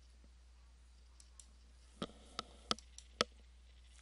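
Five short, sharp computer mouse clicks, starting about halfway through, as the chart view is changed, over a faint steady low hum.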